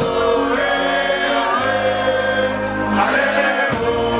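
Live music with several voices singing held lines together in chorus over a steady bass, the notes shifting about a second and a half in and again near the end.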